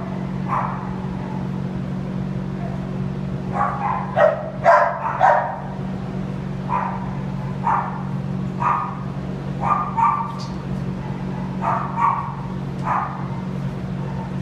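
Dogs barking in a shelter kennel: short single barks come about once a second, with a quick run of several about four to five seconds in. A steady low hum runs underneath.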